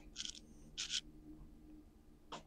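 Two brief, soft hissy mouth sounds from a person eating a donut, about half a second apart, over a faint steady low hum.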